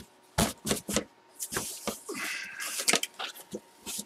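Cardboard collectibles box being opened by hand: several short knocks and scrapes of the cardboard, then about a second of rustling as the lid comes off.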